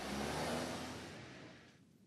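Mercedes-Benz S-Class saloon pulling away, its engine and tyre noise swelling briefly and then fading out over about a second and a half.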